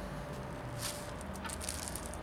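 Thin clear plastic bag crinkling, two brief rustles about a second apart.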